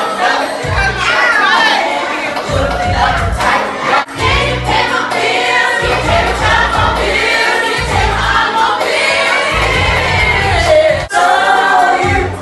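A woman singing into a microphone through loud amplified music with heavy bass, with other voices singing and shouting along.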